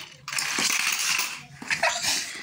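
Small hard plastic toy figurines and a toy car rattling and clattering as they are handled on a tile floor, for about a second.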